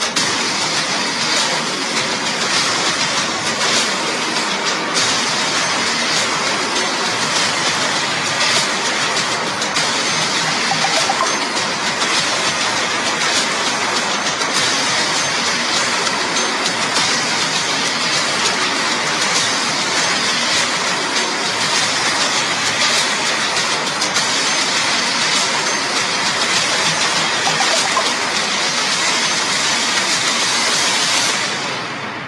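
A loud, steady rushing noise that carries on without a break.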